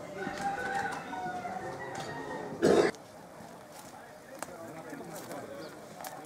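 Roosters crowing and clucking among a murmur of voices, with one short, loud call about two and a half seconds in.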